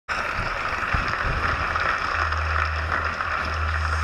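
Studio audience applauding, fading away. A steady low hum comes in about halfway through.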